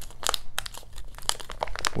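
Plastic packaging of an emergency pressure bandage crinkling as it is handled and turned over in the hands, a quick irregular string of small crackles.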